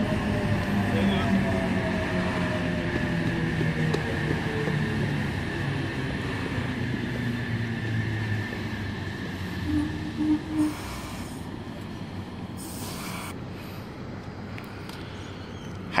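Sydney Trains H-set OSCAR electric multiple unit drawing into the platform and slowing, its traction motors whining and falling steadily in pitch as it brakes. Short hisses of air follow in the second half as it comes to a stand.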